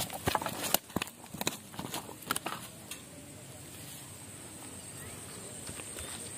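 A freshly landed fish flapping on dry dirt: a quick run of slaps and knocks in the first two and a half seconds, then only a faint steady hiss.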